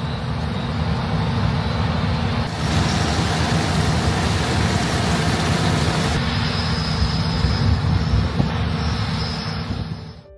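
Combine harvesters running in a wheat field: a loud, steady machinery rumble with a broad rushing noise over it.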